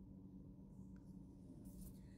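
Near silence: a faint, steady low hum of a car cabin.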